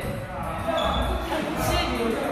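Table tennis ball knocking against paddles and the table, a few sharp clicks in a large hall.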